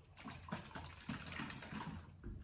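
Liquid coffee creamer sloshing inside a plastic bottle as it is tipped and shaken by hand, in a run of soft, irregular swishes.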